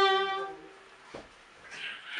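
Violin holding its final note, which fades away within the first half second, followed by a single short knock about a second in.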